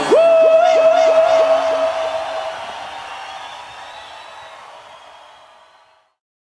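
Live band's closing note: a steady high tone with quick repeated dips in pitch, about three a second, over the band's sound, fading out to silence over about five seconds.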